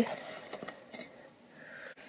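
Faint handling sounds of duct tape being pressed onto the rim of an empty tin can, with a few light clicks and a soft rustle.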